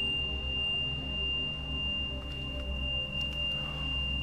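Ambient meditation background music: a low sustained drone with a single high, pure tone held steady above it.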